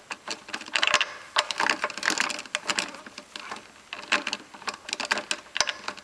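Irregular clicks, knocks and scraping of hands working a lawnmower's wheel and axle parts, several sharp taps a second with rubbing between them.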